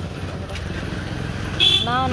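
Steady rumble of street traffic with a motor vehicle running. A brief high-pitched sound comes near the end, just before a voice.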